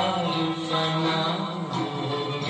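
An old film song playing from a TV speaker: a voice holding long sung notes over instrumental accompaniment.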